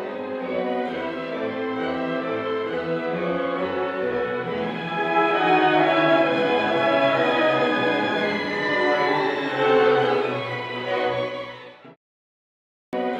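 Symphony orchestra playing, with the violins and other bowed strings carrying sustained lines over lower strings; the music fades out near the end.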